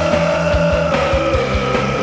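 Oi! punk rock song: a long held note that sinks slightly in pitch, over a steady drumbeat and bass.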